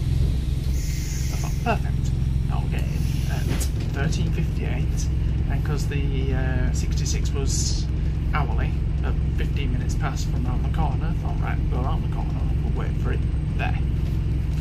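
Scania double-decker bus engine running with a steady low rumble, heard from the upper deck, with scattered light rattles and clicks.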